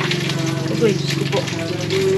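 Cooking oil sizzling in a pan as food fries: a steady hiss with small crackles.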